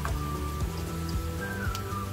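Riced cauliflower poured from a cup into a pan of vegetables simmering in butter, under steady background music.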